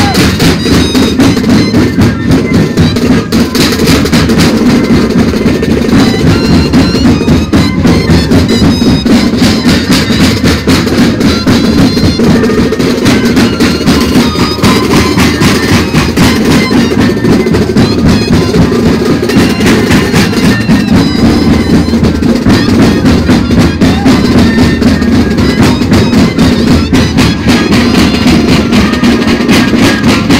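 A moseñada ensemble playing: a massed body of moseño cane flutes sounds a continuous reedy melody in parallel over a steady beat of bass drums and snare drums.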